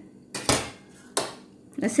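A metal spoon scraping and knocking against a stainless steel mesh strainer, twice, while milk is pressed through the strainer into a bowl.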